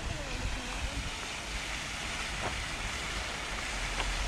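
Fountain jets splashing in a steady rush of falling water that grows slightly louder, with a low wind rumble on the microphone and faint distant voices.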